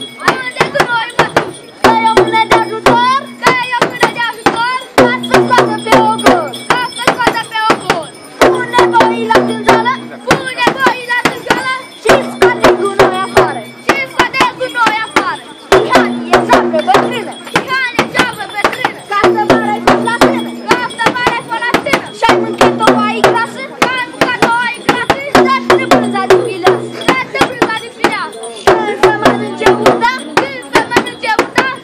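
Frame drums (dube) beaten in a fast, steady rhythm for the bear dance. Over them a short pitched phrase repeats about every two seconds.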